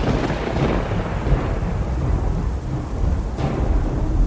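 Thunderstorm sound effect: a low, rolling rumble of thunder over steady rain.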